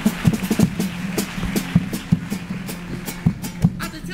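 Carnival chirigota band playing an instrumental passage without singing: drums beat a quick, steady rhythm of sharp strokes over low held chords.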